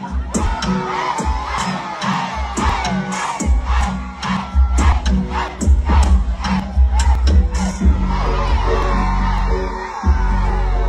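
A large crowd cheering and shouting over a loud dancehall beat from the stage sound system, with deep bass and sharp, even beat strikes that drop out near the end.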